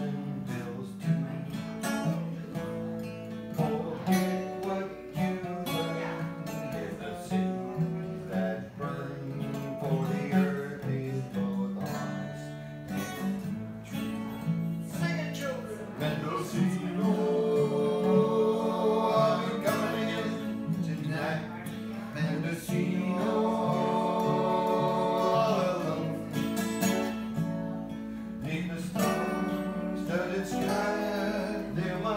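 Two acoustic guitars played together, strummed and picked in a steady rhythm.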